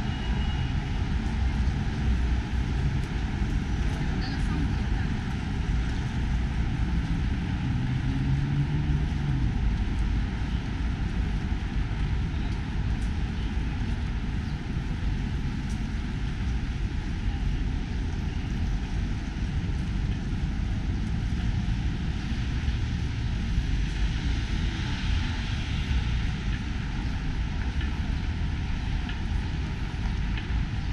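Steady city street traffic: a continuous low rumble of car engines and tyres from a busy multi-lane avenue, with no single vehicle standing out.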